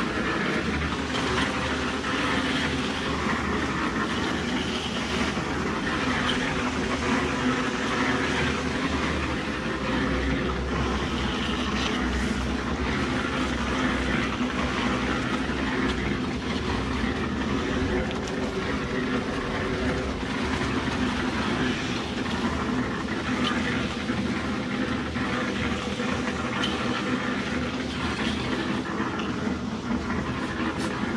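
A concrete mixer running steadily, a constant rattling drone, under the wet scrape of an aluminium straightedge being drawn back and forth across freshly poured concrete to level it.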